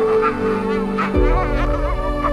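Calm new-age background music with sustained held tones. A high, rapidly wavering tone comes in about a quarter-second in, and a deep bass note enters just after the halfway point.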